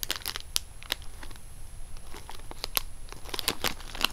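Clear plastic packaging bag around a squishy toy crinkling in the hands as it is held and shifted, in scattered, irregular crackles.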